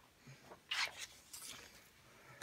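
Faint rustling of a sheet of paper being slid and handled into place behind a clear sheet, two brief soft swishes.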